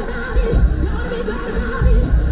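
Live gospel praise-break music with a heavy bass line and a wavering held note over it.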